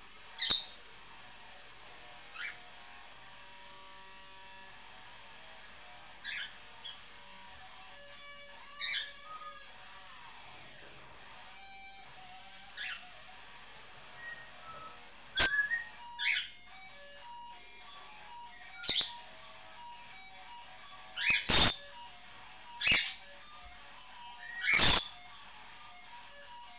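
A caged pet bird chattering in short, sharp chirps and squawks, about a dozen spaced a second or more apart and louder in the second half. Faint electric guitar played through effects pedals sounds from another room underneath.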